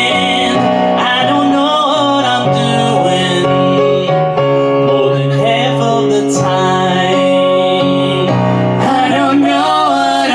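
A live song: a woman singing with piano accompaniment played on a Yamaha MOTIF XF8 stage keyboard, running steadily throughout.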